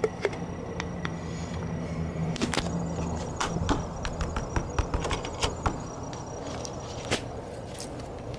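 Plastic cell-cover strip of a car battery being pressed back down over the cell openings: a series of irregular light clicks and knocks of plastic on plastic, over a low steady hum.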